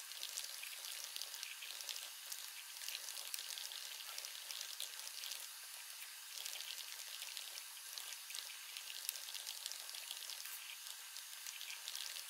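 Fingers typing quickly on a laptop keyboard: a dense, irregular run of light key clicks over a faint hiss.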